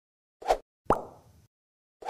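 Two short pop sound effects of an animated logo intro, about half a second and one second in, the second with a brief fading tail.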